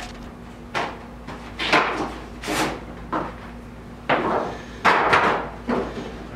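Snare drum being handled while its heads are changed: a run of uneven knocks and clatters from the shell, rim and drum head, about seven separate bumps at irregular spacing.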